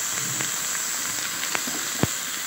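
Raw minced chicken sizzling in hot oil with sautéed onions in a pan: a steady frying hiss with a few faint pops.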